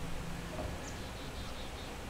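Faint outdoor background in a pause between words: a steady low hum with light hiss, and a tiny high chirp about a second in.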